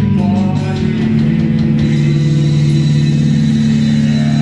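Rock band playing amplified electric guitar, bass guitar and electronic drum kit. The drum hits thin out about two seconds in, leaving a loud, distorted chord held and ringing.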